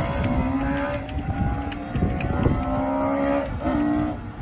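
Rally car engine accelerating hard, its pitch climbing and then dropping at gear changes, once about halfway through and again near the end.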